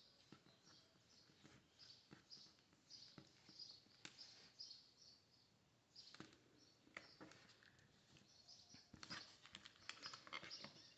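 Near silence: faint light clicks and rustles of thin polypropylene cord being handled and pulled tight into a knot, with faint high chirps repeating about twice a second.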